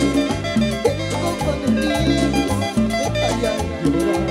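Live cumbia band playing an instrumental passage: electric bass, electric guitar, keyboard and timbales over a steady, even dance beat.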